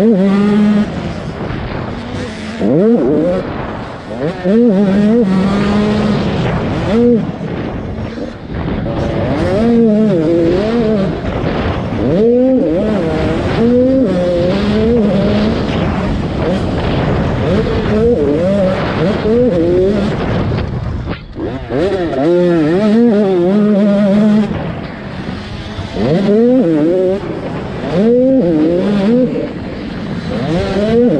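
An 85cc two-stroke motocross bike engine held wide open, its revs repeatedly climbing and falling away through gear changes and off-throttle moments, over a steady rush of wind on the helmet camera.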